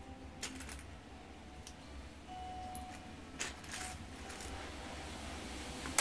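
Loose plastic Lego pieces clicking and clattering as a hand sifts through a bag of bulk bricks, in a few scattered bursts.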